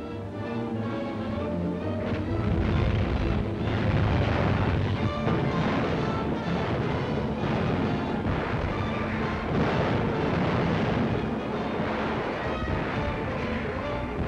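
Background music mixed with continuous heavy gunfire and exploding shells, growing louder about two seconds in.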